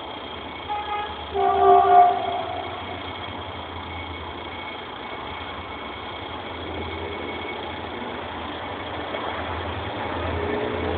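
Approaching diesel locomotive sounding its horn: a short toot just under a second in, then a louder blast of about a second, over the steady low rumble of the engine.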